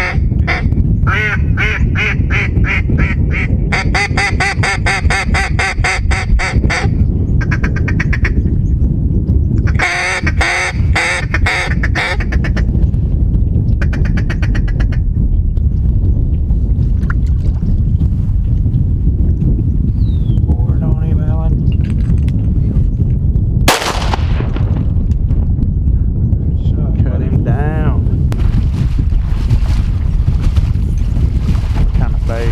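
A duck call blown in quick runs of loud mallard quacks, with a few more calls later on. A single sharp bang comes about two-thirds of the way through. Steady wind rumble on the microphone lies underneath.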